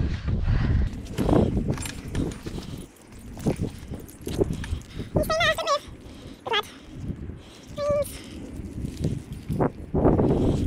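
Handling noises and knocks as a horse stands and shifts its hooves on a rubber mat, busiest in the first couple of seconds. A short call with a wavering pitch comes about five seconds in, followed by a falling squeal-like glide and a brief second call near eight seconds.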